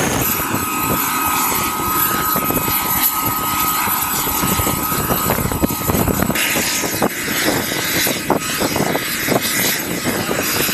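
Boeing CH-47 Chinook tandem-rotor helicopter running on the ground with its rotors turning during hot refuelling: a steady, loud running noise with a thin high whine. About six seconds in the sound changes to a rougher helicopter noise broken by irregular short thuds.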